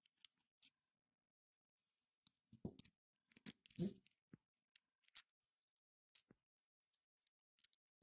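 Faint, scattered clicks and brief scrapes of small dishwasher-pump parts being handled: a metal shaft and a bushing fitted and turned by hand. About a dozen short ticks, the loudest a little before three seconds and around four seconds in.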